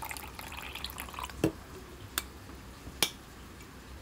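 Brewed tea being poured into a plastic cup for about a second, a short splashing trickle that stops, followed by three sharp clicks.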